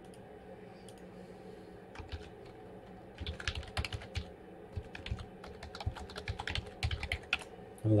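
Computer keyboard being typed on: a few key clicks about two seconds in, then a quick run of typing that stops shortly before the end.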